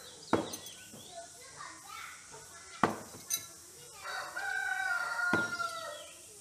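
Thrown knives striking a wooden log target: three sharp thuds about two and a half seconds apart, with a lighter click between the second and third. A rooster crows in one long call near the end.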